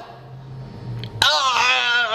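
A person's voice wailing, a drawn-out cry with a wavering, warbling pitch that starts just over a second in, after a low hum.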